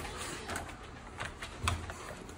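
Wire dog crate door being swung shut, with a few light metal clicks and rattles of the wire frame and a dull knock near the end.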